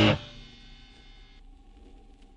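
A fast, distorted powerviolence song stops dead at the start. A distorted electric guitar chord rings on and fades out over about a second, then a quiet gap between tracks follows.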